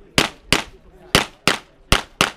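Pistol fire in a practical-shooting course: five sharp shots in under two seconds, spaced about a third to a half second apart, each followed by a short echo.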